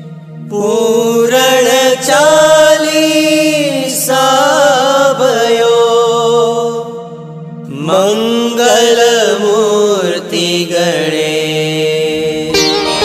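Devotional Ganesh bhajan singing: a voice sings long, wavering, chant-like phrases over a steady drone, three phrases with short breaths between them.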